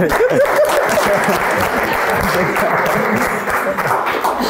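Applause: many hands clapping steadily, with some voices over it, stopping near the end.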